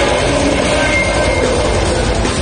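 Death metal band playing live, loud: heavily distorted electric guitars and drums run together into one dense, unbroken wall of sound.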